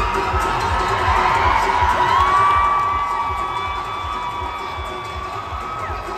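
Loud dance music with a heavy, steady bass beat, mixed with an arena crowd cheering and shouting.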